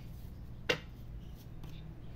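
A tarot deck handled on a glass tabletop, with one sharp tap a little under a second in and a couple of fainter ticks, over a faint low hum.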